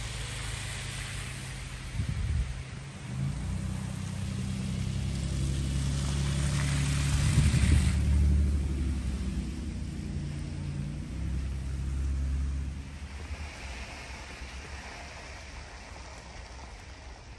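A motor vehicle's engine running close by: a low, steady hum that builds to its loudest about halfway through, with a brief hiss at the peak, then dies away near the end.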